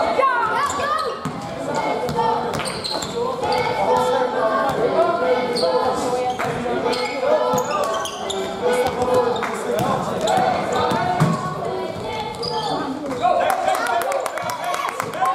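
A basketball bouncing on a sports-hall floor during play, repeated sharp knocks that echo in the large hall, with players calling out over them.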